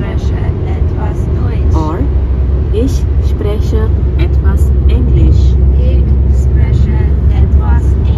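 Steady low road rumble inside a moving car's cabin at motorway speed, with voices talking indistinctly over it.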